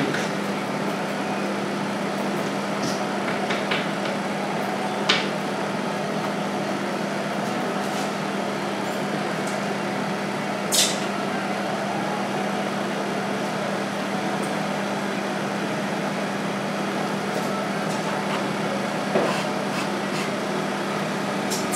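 Steady background hum with a constant low drone and hiss, as of room ventilation or electrical equipment. Over it, a palette knife working thick oil paint on a stretched canvas gives three short clicks: about five seconds in, near eleven seconds, and near the end.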